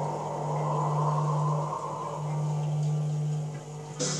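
Telecaster-style electric guitar played along to a recorded rock track, with a steady low note held through most of it and briefly broken about two seconds in.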